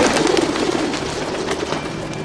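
A flock of pigeons suddenly taking off, a loud flurry of wing flaps that dies down over about a second.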